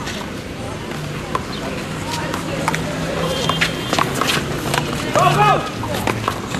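A one-wall handball rally: a string of sharp slaps at irregular intervals as the rubber ball is struck by hand and hits the wall and court, over crowd chatter. A shout comes near the end as the point finishes.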